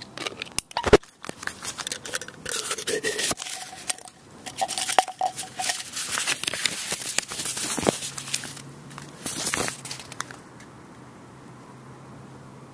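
A small plastic geocache container being opened by hand: the ribbed screw cap scraping and clicking, then the rolled paper log sheet pulled out and unrolled with paper crinkling, in a busy run of clicks and scrapes with a brief squeak midway.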